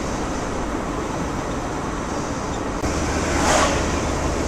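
Steady road and engine noise inside a moving Volkswagen T4 camper van, with a low hum growing stronger about three seconds in and a brief rushing swell shortly before the end.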